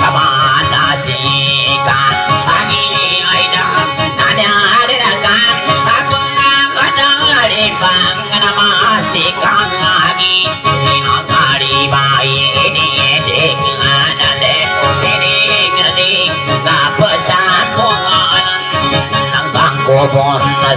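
Kutiyapi, a Maranao two-stringed boat lute, playing a continuous plucked melody over a steady held drone note.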